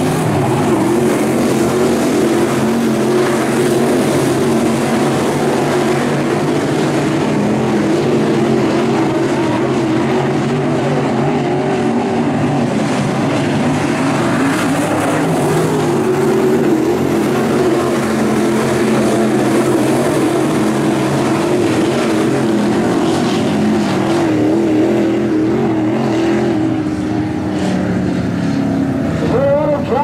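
A pack of dirt late model race cars' V8 engines running hard around a dirt oval, a loud continuous engine noise whose pitch wavers as the cars go through the turns.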